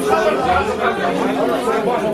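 Several men talking over one another at once: overlapping conversational chatter.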